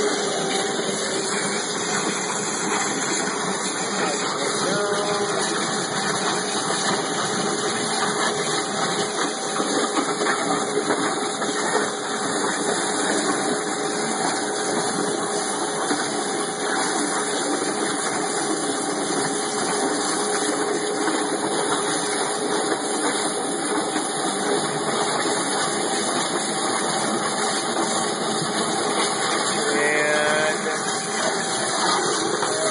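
Water jet cutter running: a steady loud hiss from the high-pressure jet, with a faint steady hum under it.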